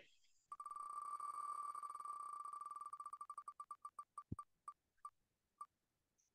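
Wheel of Names web spinner's tick sound effect as the wheel spins: a fast, quiet run of pitched ticks that starts about half a second in and slows steadily, ending in a few widely spaced ticks as the wheel comes to rest.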